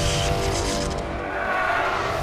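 Film-trailer sound design: a whooshing swell with a faint held tone under it, between hits of the trailer music.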